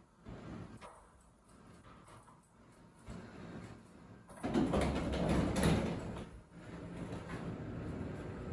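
Elevator doors sliding along their track: after a quiet stretch, a sudden rumble about halfway through that lasts about two seconds and then fades.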